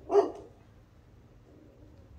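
A single short, loud bark, once.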